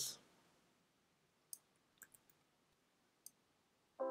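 Near silence with four faint, isolated clicks from a computer keyboard as code is edited.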